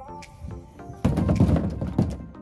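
Background music with a steady rhythm of short repeated notes. About a second in, a loud, low rumbling thump lasts close to a second over the music.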